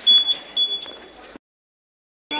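A high-pitched electronic beep sounding several times in quick succession, with a couple of loud knocks over it, then the sound cuts out abruptly about a second and a half in.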